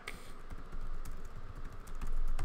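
Typing on a computer keyboard: a rapid, uneven run of key clicks.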